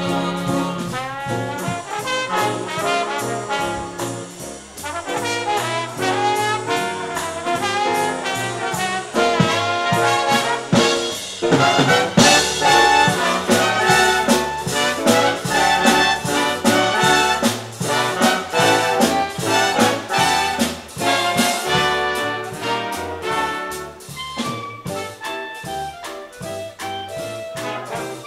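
Live swing big band playing, with trombones, trumpets and saxophones sounding together. The loudest ensemble accent comes about twelve seconds in.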